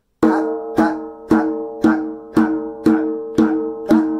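Djembe open tones struck by hand on the edge of the head: eight even strokes about two a second, each ringing on until the next, playing a steady eighth-note 'pat' pattern.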